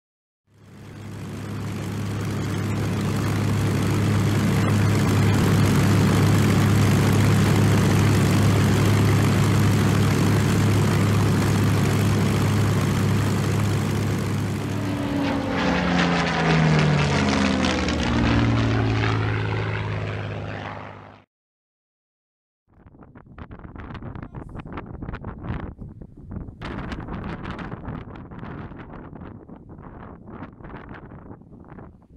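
A Supermarine Spitfire's V12 piston engine and propeller flying past, a steady loud drone that drops in pitch as it passes, starting about 16 seconds in, before cutting off abruptly near 21 seconds. After a short silence, gusty wind buffets the microphone.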